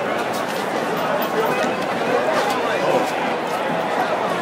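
Dense street crowd: many voices talking and calling out at once, with a few short clicks.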